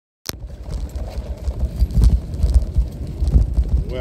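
Phone microphone rubbing and knocking against clothing, giving a steady low rumble with irregular thuds, with a sharp click as the sound begins.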